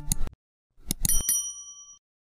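Subscribe-button animation sound effects: quick mouse clicks at the start, then a bright bell rung with three fast strikes about a second in, its ringing fading away.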